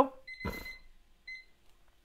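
A faint high electronic beep, sounding twice in the first second and a half, the first time together with a soft bump; then near quiet.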